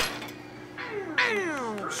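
Cartoon soundtrack: a sharp pop from a carnival-game toy gun right at the start, then a whiny, voice-like cry sliding down in pitch from about a second in.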